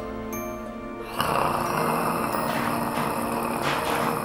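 Loud, rough snoring starts suddenly about a second in and carries on over light background music.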